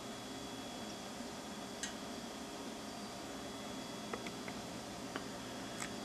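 Quiet, steady room tone and hiss, with a few faint short ticks scattered through.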